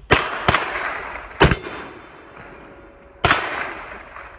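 Four sharp gunshots, each trailing off in echo: two close together right at the start, the loudest about a second and a half in, and a fourth a little past three seconds. Among them is the report of a blackpowder percussion pistol.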